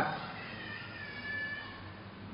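A faint, drawn-out high-pitched cry lasting about a second, starting about half a second in, its pitch nearly steady.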